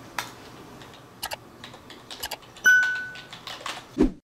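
Laptop keyboard typing in scattered clicks. About two-thirds through, a single bright electronic chime rings out for about half a second, louder than the typing.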